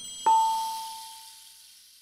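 A single bright metallic ding, struck about a quarter second in, ringing on one clear tone and fading out over about a second and a half, with faint high ringing above it dying away too: the sound effect of a logo animation.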